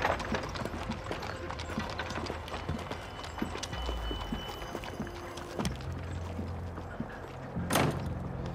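Horse hooves clip-clopping on a cobbled street under a low, sustained music score that grows stronger a little past the middle. A sharp noise comes just before the end.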